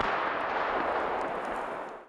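A distant artillery blast: a sudden bang at the start, then a long echo that dies away over about two seconds before the sound cuts off abruptly.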